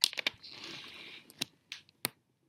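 Handling noise from the camera being touched: a quick run of sharp clicks, about a second of rustling, then a few separate clicks.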